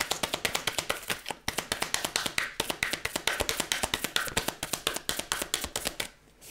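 A deck of oracle cards being shuffled by hand: a fast, even run of light card clicks, about ten a second, that stops at the very end.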